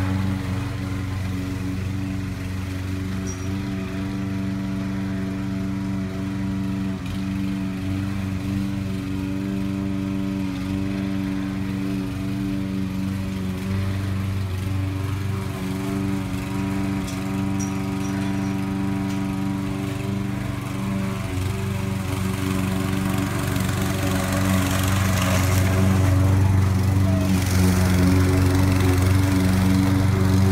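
Toro walk-behind gasoline lawn mower engine running steadily at mowing speed, growing louder in the last few seconds as the mower comes close.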